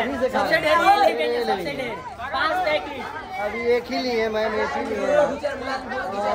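Several people talking over one another at once: lively group chatter.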